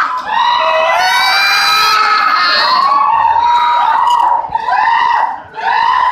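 Loud human shouting: a long held yell about a second in, then a string of short rising-and-falling shouts.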